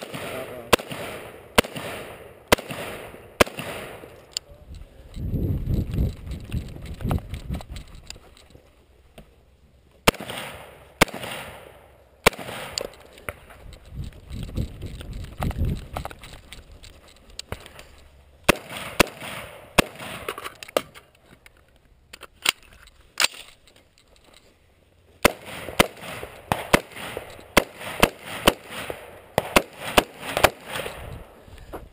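Knight's Armament SR-15 5.56 mm rifle fired in several strings of quick, sharp shots, with pauses between strings and the densest string near the end. A low rumble fills one of the gaps early on.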